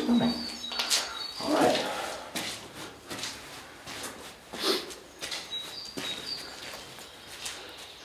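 Footsteps walking at a steady pace with small birds chirping outside in short high notes, a few at a time, near the start and again after about five seconds.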